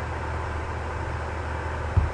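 Steady low hum with a faint even hiss underneath and nothing else: the background room tone of a home recording setup.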